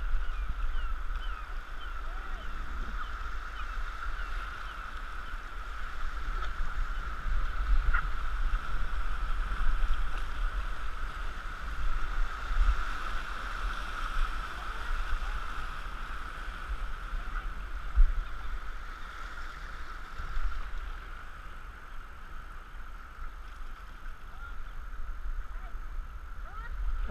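Steady rush of river rapids around a canoe, with a low rumble on the microphone. It is loudest through the whitewater midway and eases near the end as the water calms. Two sharp knocks stand out.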